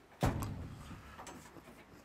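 A single dull knock about a quarter second in, trailing off into a faint low rumble.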